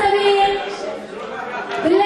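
A woman's voice through a hall microphone, held out on long steady vowels: one at the start and another beginning near the end.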